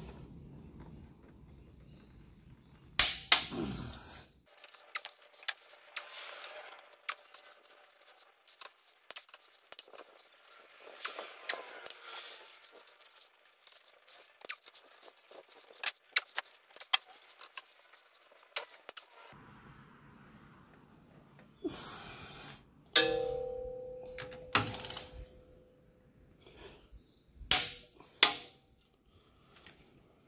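Irregular metallic clicks and clanks of a large ratchet-head wrench and socket working the cylinder head bolts of a Cat 3126B/C7 diesel through the final 90-degree turn of the torque-turn tightening. Late on, a few sharper knocks and one ringing metal clang.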